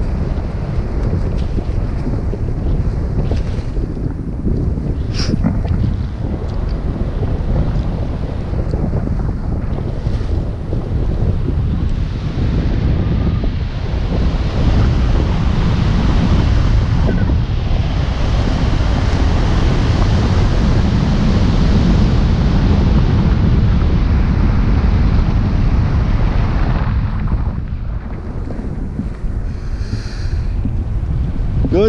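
Airflow rushing over the camera microphone in paraglider flight, a loud low buffeting wind noise. It grows louder for the middle stretch and eases off near the end.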